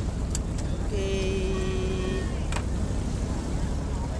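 Steady low rumble of a riverboat engine running. About a second in, a held pitched tone sounds for about a second, and there are two sharp clinks.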